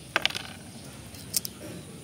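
Kidney bean pods being split open by hand, the dry pods crackling in a quick run of snaps just after the start and again briefly about 1.4 s in.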